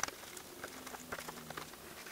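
Faint scattered clicks and taps of hands fitting a rubber lens gasket and handling the amber lens of a scooter cowl's turn signal.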